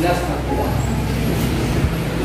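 A motor vehicle engine running steadily, a low even rumble, under faint voices in the room.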